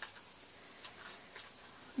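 Faint, irregular light clicks as a paper doll and feather butterfly wings on wire stems are handled and positioned together.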